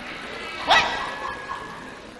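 A single short, loud cry rising in pitch, a little under a second in, that fades away over the next half second.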